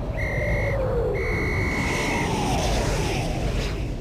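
Battlefield whistle blown in two blasts, a short one then a longer one: the signal for the men to go over the top. Under it, two long falling whistles, like incoming shells, sound over a low rumble of battle.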